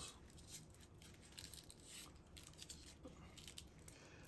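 Faint rustling and light clicks of braided modular power-supply cables being handled and untangled.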